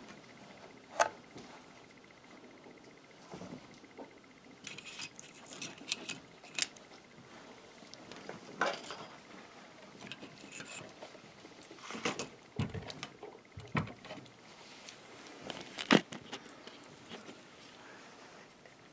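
Handling noise on a tabletop: scattered light clicks, knocks and clatter of knives and the parts of a knife sharpening system being moved and set down, a dozen or so separate sounds with quiet gaps between.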